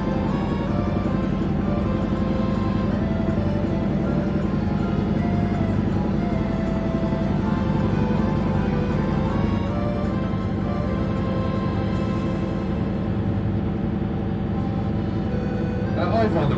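Background music over the steady low hum of a tour boat's motor.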